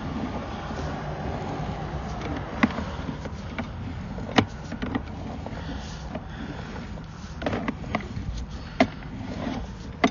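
Sewer inspection camera's push cable being pulled back out of the drain line, giving irregular sharp clicks and knocks over a steady low rumble.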